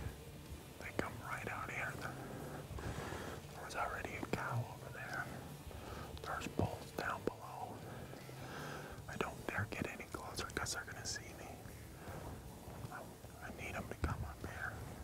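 A man whispering, with a few light clicks.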